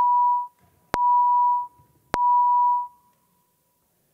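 Three identical electronic beeps, each a steady single-pitched tone of just under a second, evenly spaced about a second apart: the legislative chamber's roll-call signal that electronic voting has opened.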